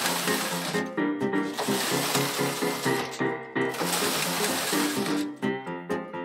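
Background music with a steady rhythm of pitched notes, over three long rushing sweeps from a hand-operated knitting machine's carriage being pushed back and forth across the needle bed.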